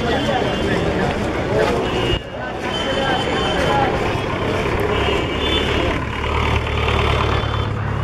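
Voices of passers-by talking over the engine of a yellow Hindustan Ambassador taxi. The engine's low rumble grows louder about five seconds in as the taxi drives past close by.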